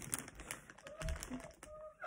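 Plastic bag rustling and crinkling as a hand digs into it and pulls an item out, with a few small clicks.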